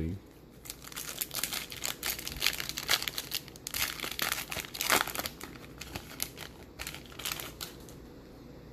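Foil wrapper of a trading-card pack being torn and peeled open by hand, a dense run of irregular crinkles and crackles, loudest about five seconds in.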